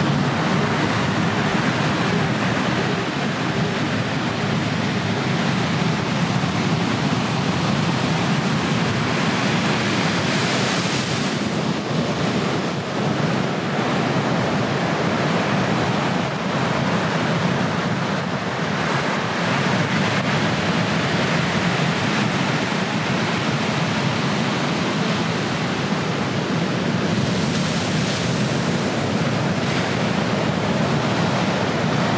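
Ocean surf: breaking waves and rushing whitewater making a steady, even wash of noise, which swells brighter briefly about a third of the way in and again near the end.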